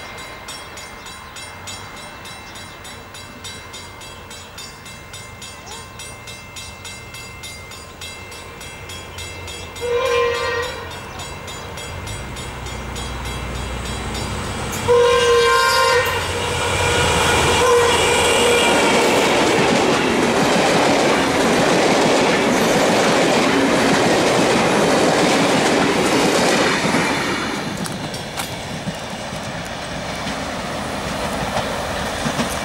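NSW 47 class diesel locomotive 4708 hauling a heritage passenger train, growing louder as it approaches. It sounds its horn in a short blast about ten seconds in and a longer one about five seconds later. It then passes close by, engine running and carriage wheels clacking over the rail joints, loud for about ten seconds before fading as the last carriage draws away.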